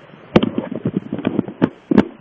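Handling noise on the camera's microphone: a quick, irregular run of sharp knocks and clicks, about a dozen in two seconds, as the camera is gripped and moved.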